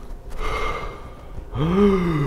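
A man breathing hard to show he is struggling for air: a long, strained inhale, then a voiced exhale near the end whose pitch rises and falls.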